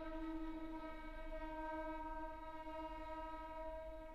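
String quartet holding a single soft, long-sustained bowed note, steady in pitch and level.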